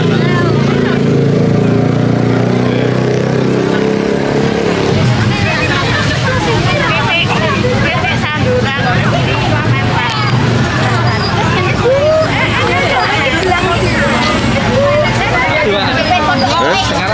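Crowd of walkers chattering and calling out, many voices overlapping. Under it, a vehicle engine runs steadily for about the first five seconds, then fades under the voices.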